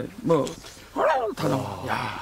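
A man chanting a short repeated syllable, sing-song. About a second in, his voice drops in pitch into a rough, drawn-out growl.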